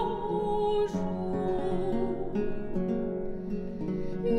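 French baroque air de cour played on two viols, an instrumental passage between sung phrases. A held sung note fades about a second in.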